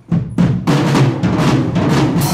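Drum kit played loudly, starting abruptly just after the start and going on in a quick, dense run of hits.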